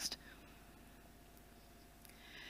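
Near silence: quiet room tone with a faint steady low hum, just after the last word of a sentence dies away at the very start.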